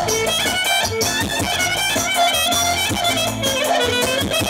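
Loud live dance music played through PA loudspeakers: a fast, ornamented lead melody over a steady beat.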